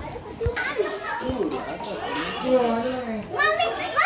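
Children's voices, talking and calling out, with a couple of short low thumps in the first second and a half.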